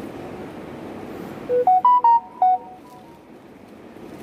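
A short electronic jingle: five quick beeping notes that step up in pitch and then back down, loud, lasting about a second, from about a second and a half in. Under it runs a steady low background rumble.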